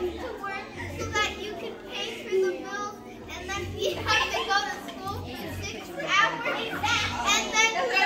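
A group of children chattering all at once, many overlapping voices with no clear words.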